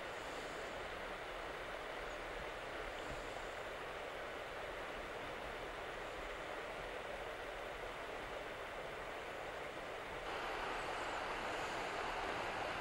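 Steady rush of a river flowing over stones, a little louder about ten seconds in.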